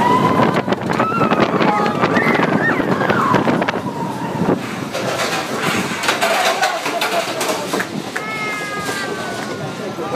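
Mine-train roller coaster running along its track: a steady rattle and rush of wind on the microphone, with riders shouting and crying out over it. One long held cry, falling slightly in pitch, comes near the end.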